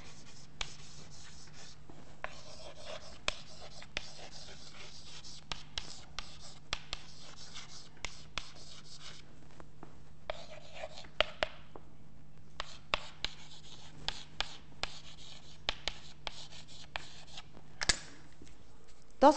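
Chalk writing on a chalkboard: a string of sharp taps and short scratching strokes as words are written out, with a brief pause a little past the middle.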